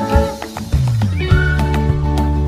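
Outro music with a steady beat and held tones, with a short sliding tone a little past the middle.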